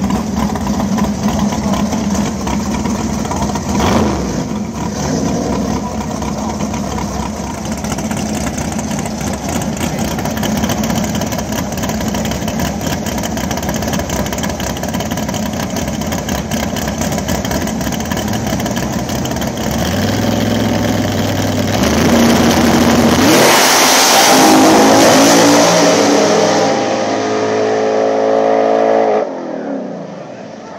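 Two Fox-body Mustang drag cars idling at the starting line, revved in short bursts while staging. About 23 seconds in they launch hard, and the engines climb in pitch in steps through the gear changes. The sound drops off suddenly near the end.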